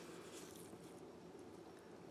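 Near silence: room tone, with faint soft handling of trading cards.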